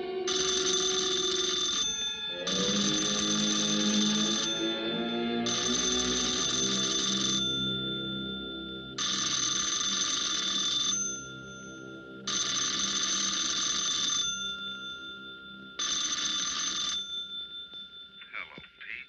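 Wall-mounted telephone's bell ringing six times, each ring about two seconds long with short pauses between; the last ring is shorter. Film-score music plays underneath.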